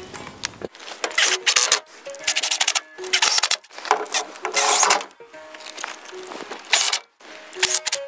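Cordless drill driving self-drilling screws into a wooden fence rail through its metal bracket, in several short bursts with pauses between. Background music plays under it.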